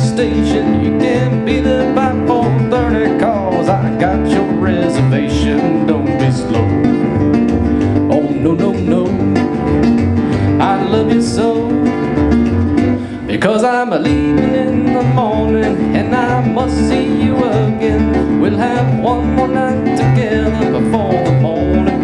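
Two acoustic guitars picked fingerstyle in an instrumental break, over a washtub bass playing a steady low bass line. A little past the middle the music drops out for a moment, then comes back in.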